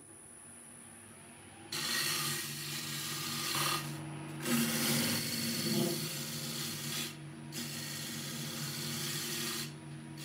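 A wood lathe's motor hums steadily while a turning tool cuts a spinning wooden disc. After about two seconds of hum alone, the cutting comes in as a loud hissing scrape in three runs with two brief breaks, and stops just before the end.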